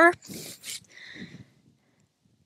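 The tail of a spoken word, then about a second of soft breathy sound from the speaker, like an exhale or a whisper.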